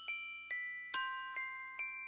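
Music: a solo line of bell-like struck notes from a glockenspiel or celesta-type instrument, about five notes in two seconds, each ringing and fading before the next.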